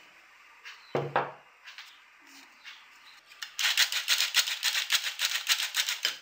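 Stainless steel hand-crank flour sifter being cranked to sift icing sugar into a bowl, starting about three and a half seconds in: a fast, even metallic rattle of several strokes a second.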